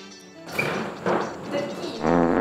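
Background music with voices, with a sudden louder swell about half a second in.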